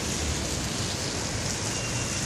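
Steady rushing noise of splashing water from a park fountain, over a low hum of city traffic.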